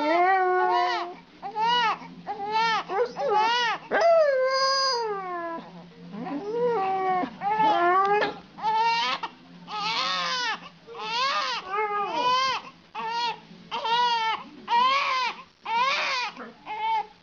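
A young baby crying in a steady run of short, rising-and-falling wails, one after another with brief breaths between them.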